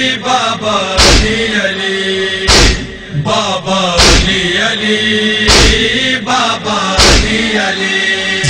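A chorus of voices chants a mournful noha melody over a heavy beat that lands about every one and a half seconds, the steady matam (chest-beating) rhythm of a Shia lament.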